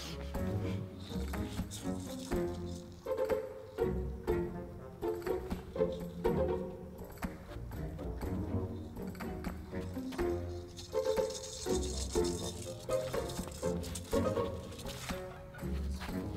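Tango music playing with a steady, rhythmic bass beat.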